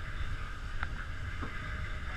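Steady low drone of a fishing boat's engine, with two faint clicks about a second in.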